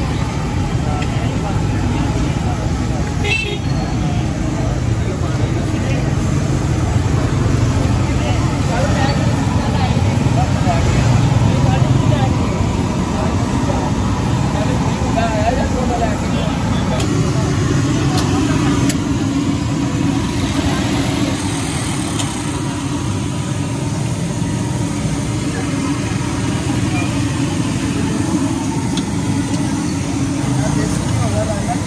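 Busy street-market ambience: a steady low rumble of traffic and engines, with people talking around the food stall and occasional clinks of utensils.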